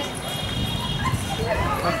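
Women's voices calling out over a steady low rumble.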